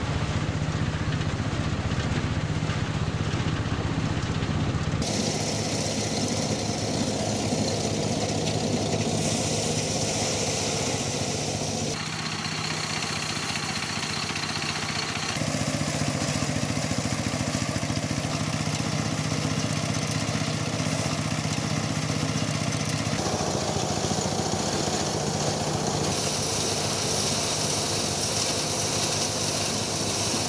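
Engine-driven threshing machine running steadily while sheaves of grain stalks are fed into it. The steady machine hum shifts abruptly in tone every few seconds.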